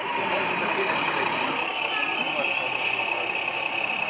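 A 0e-scale model diesel railcar running on a layout: a steady, engine-like hum. Behind it is the chatter of many voices.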